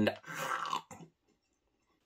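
A man biting into and chewing a gummy candy snake: soft wet mouth sounds and a small click in the first second, then quiet.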